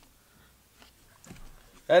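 Faint clicks and rustles of cordless power tools being handled and picked up, a little busier in the second half. A man's voice starts just before the end.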